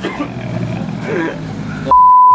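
Low, steady rumble of street traffic, a vehicle passing on the road, under faint voices. Right at the end a loud, steady beep tone cuts in, with the other sound muted beneath it.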